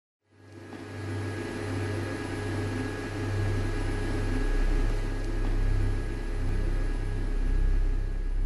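Steady low electrical hum of a switchboard, with a rumble beneath it, fading in over the first second and swelling gently in loudness.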